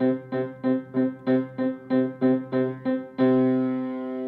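Upright piano: the same C is struck in two octaves together, over and over at about three notes a second, while the other keys of a five-note C-to-G hand position are held down. This is a finger-independence exercise. About three seconds in, a fuller chord sounds and rings on, fading slowly.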